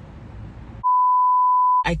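An electronic beep of one steady high pitch, held for about a second and starting about a second in, laid in during editing like a censor bleep; before it only faint background noise.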